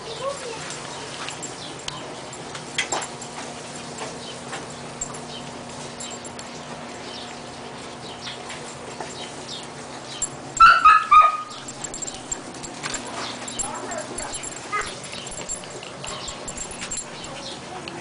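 Five-week-old Siberian husky puppies whimpering and yipping, with a short run of high-pitched yelps near the middle.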